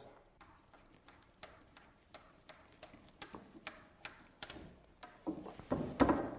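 Ratchet wrench clicking in a series of sharp, faint clicks, about three a second, as it drives lag screws up through the underside of a wooden handrail into a newel post; a louder rasping sound comes near the end.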